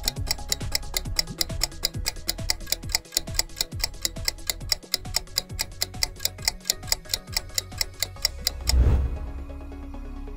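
Quiz countdown timer sound effect: rapid, evenly spaced clock-like ticking over background music. Near the end the ticking stops with a low thump, followed by a held low tone.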